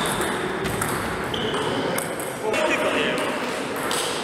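Table tennis rally: the ball clicking sharply off rubber paddles and bouncing on the table, a hit every half second to second or so.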